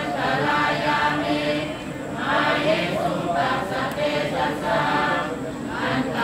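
A group of Buddhist devotees and monks chanting prayers in unison, many voices in a steady, syllable-paced chant, with brief breaths between phrases about two seconds in and near the end.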